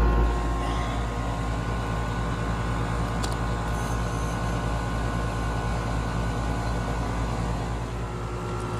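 Outdoor air-conditioning condensing unit running, its compressor and fan making a steady hum with a few constant tones. The system is running while it is charged with R-410A refrigerant after being found low on charge.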